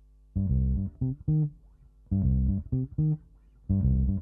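Electric bass guitar playing solo, phrases of plucked notes in the low register broken by short pauses. It comes in about a third of a second in, after a faint held tone.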